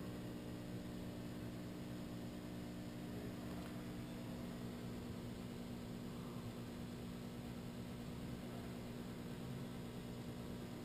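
Steady electrical hum with a low drone and hiss from the powered-up Clausing Kondia CNC vertical mill; the pitch and level do not change.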